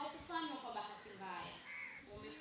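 A woman speaking into a handheld microphone, her voice carried over a public-address system.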